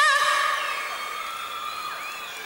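A woman's long sung note with a wide vibrato stops just after the start, leaving a faint steady tone that slowly fades away.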